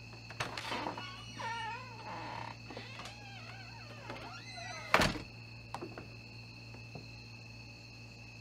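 A door creaking open with a wavering, squealing hinge, then banging shut with a loud thunk about five seconds in, followed by a couple of light knocks.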